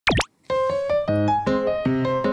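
A quick cartoon pop sound effect whose pitch sweeps up and down, then, about half a second in, a bouncy ragtime tune on keyboard starts up.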